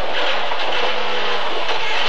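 Lada 2107 rally car's four-cylinder engine running at steady high revs, heard from inside the cabin over a loud hiss of road and wind noise.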